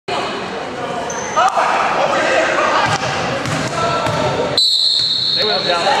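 A basketball bouncing on a hardwood gym floor during play, with spectators' voices and shouts echoing around the hall. A steady high tone sounds for over a second shortly before the end.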